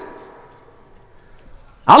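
A man's voice through a microphone and loudspeakers: his phrase echoes away into a short pause, and he starts speaking again near the end with a long phrase that bends up and down in pitch.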